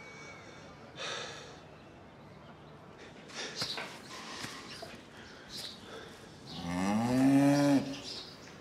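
A cow moos once near the end, a long, low call that rises a little and then holds steady; it is the loudest sound here.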